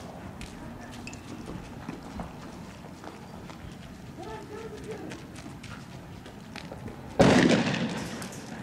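Voices and scattered small pops over outdoor background noise during a night street clash, then a single loud bang about seven seconds in that dies away within a second.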